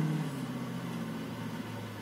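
Car engine running with a low, steady note that fades away gradually, played from a television car commercial and heard through the TV's speaker.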